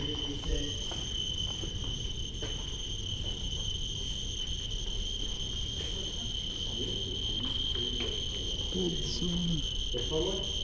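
Geiger counters sounding a steady, high-pitched electronic chirping tone as they register radiation.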